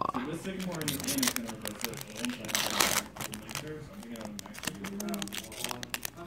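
Foil Pokémon booster pack crinkling in the hands as it is torn open, with one louder rip of the wrapper about two and a half seconds in.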